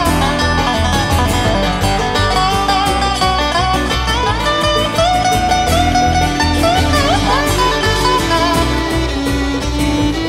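Live bluegrass string band playing an instrumental break: plucked strings over a steady bass beat, with a lead line that slides between notes.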